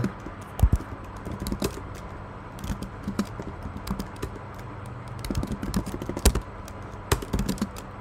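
Typing on a computer keyboard: key clicks in short irregular bursts with brief pauses between them, as short terminal commands are typed and entered.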